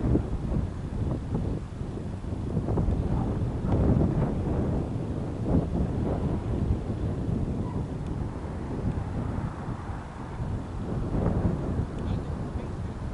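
Wind buffeting the camera's microphone: an uneven low rumble that swells and fades in gusts.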